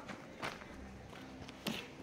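Soft footsteps on a paved street, a couple of faint steps heard over a quiet background.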